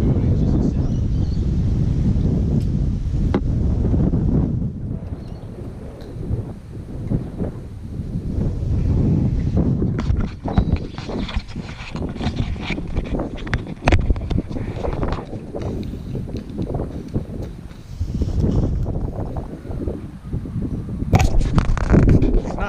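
Wind buffeting a small action-camera microphone: a dense low rumble for the first few seconds, then gustier and uneven, with scattered short clicks and knocks. Near the end, loud rubbing and knocking as the camera is handled against fabric.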